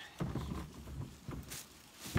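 Handling noise from a plastic kayak and paddle being shifted on a bank of dry leaves: irregular rustling and dull knocks, with a louder knock near the end.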